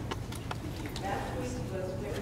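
A few sharp clicks or knocks, then a faint voice begins speaking about a second in, with room echo.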